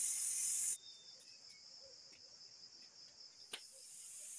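A loud, high steam hiss from a kettle on a wood fire stops abruptly about three-quarters of a second in. It leaves a cricket's steady, high, pulsing trill, with a single sharp click near the end.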